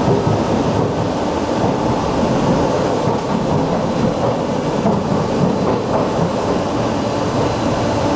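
Passenger train running, heard from inside the carriage: a steady rumble of wheels and motion.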